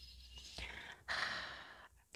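A woman's soft breath, a faint airy hiss about a second in that lasts under a second and fades away.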